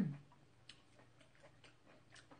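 Faint, irregular small clicks of a person chewing food with the mouth closed, just after a hummed 'mm' fades out.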